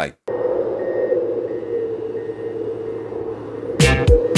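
Channel intro sound design: a steady droning tone over a hiss, with faint short high beeps. Near the end, intro music with hard percussive hits comes in loudly.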